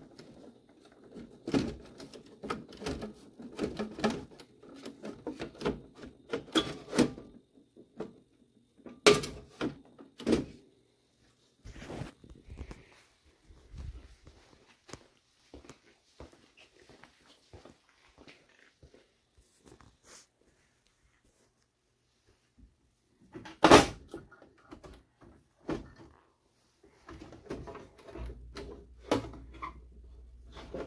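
Handling noise: irregular knocks and clatters of things being picked up, moved and set down, with two loud thumps, one about nine seconds in and one about twenty-four seconds in. A low steady hum comes in near the end.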